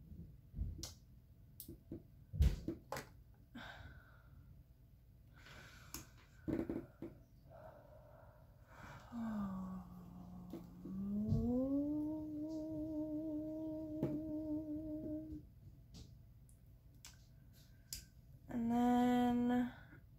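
Small sharp clicks and taps of jewellery pliers and wire being worked, the loudest about two and a half seconds in. From about nine seconds a woman hums, sliding down and then up to a held, wavering note for several seconds, and hums again briefly and louder near the end.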